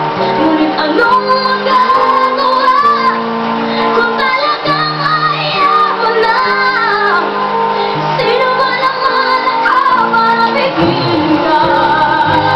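A boy singing a ballad into a microphone in a high voice, sliding between notes, over long held chords on a Casio electronic keyboard.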